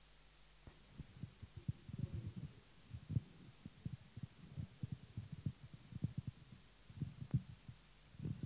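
Faint, irregular low thumps and bumps, several a second, starting about a second in: handling noise from a handheld microphone being moved and brushed.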